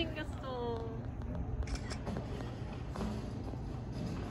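A cat meowing once, a drawn-out call falling in pitch, in the first second, over steady outdoor background noise.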